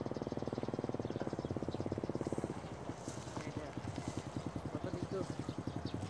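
Small motorcycle engine running as the bike rides up, a fast, even putter. About two and a half seconds in the throttle eases off and the engine drops to a slower, looser beat as the bike rolls in.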